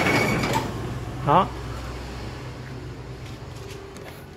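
Kubota L3602 tractor's diesel engine shutting down after the key is switched off, its running sound fading out over about two seconds.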